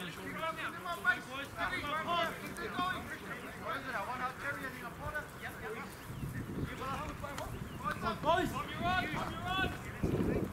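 Distant voices shouting and calling across a rugby field, in quick runs of short calls with no clear words.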